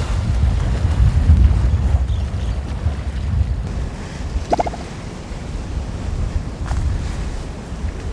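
Wind rumbling on the microphone outdoors, a steady low buffeting with faint rustle above it. About four and a half seconds in, one short pitched sound stands out briefly.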